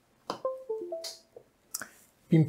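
A USB cable clicking into an Arduino Uno board, followed at once by the computer's short chime of several quick notes signalling that a USB device has been connected. Another sharp click comes near the end.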